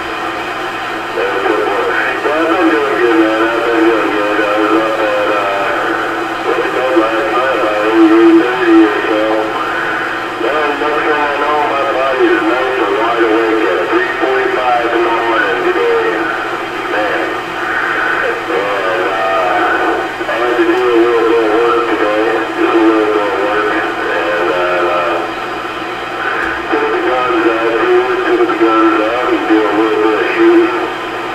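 A voice transmission coming through a Kraco CB radio's speaker. It sounds narrow and tinny, and the words are hard to make out.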